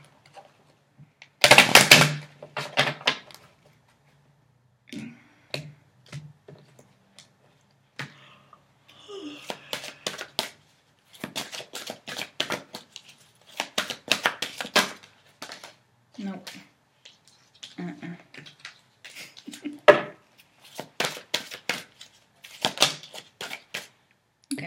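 A deck of oracle cards being shuffled by hand. Near the start the card edges riffle in a loud, dense crackle, followed by repeated bursts of quick flicks and slaps as the cards are shuffled over and over.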